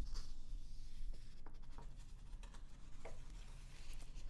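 Magazine pages being turned by hand: paper rustling near the start, then a few crisp, scattered paper ticks and crinkles as the new spread settles.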